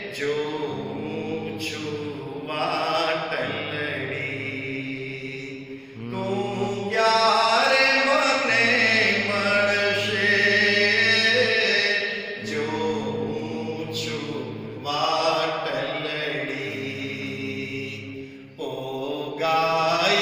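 Devotional chanting sung in long, held melodic phrases, with short breaks between phrases.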